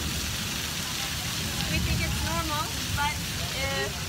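Heavy tropical downpour drumming steadily on the street and pavement in a thunderstorm, with voices talking over it in the second half.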